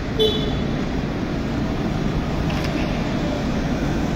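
Steady city street traffic noise, a continuous low rumble.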